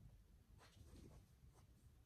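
Near silence, with faint scratchy rustling from handling a cloth tote bag and other small items being packed.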